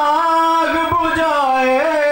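A man's voice singing one drawn-out melodic line of Urdu devotional poetry, the note held and sliding without a break.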